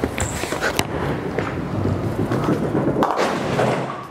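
A bowling ball is released and lands on the wooden lane with a thud, rolls down it with a steady rumble for about two seconds, then crashes into the pins with a sharp clatter about three seconds in.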